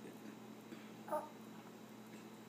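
A baby's brief, faint vocal squeak about a second in, over a low steady room hum.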